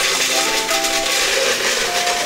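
Dry penne pasta poured into a glass storage jar: a dense, continuous rattling clatter of pasta pieces hitting the glass and each other, starting abruptly, over background music.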